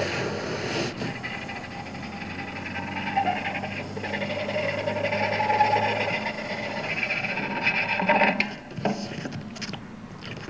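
Experimental noise improvisation: a bow drawn across objects on an amplified table of electronics, giving sustained grinding, whining tones with sliding pitches that swell over the first several seconds. The sound breaks off a little after eight seconds into scattered sharp clicks and scrapes.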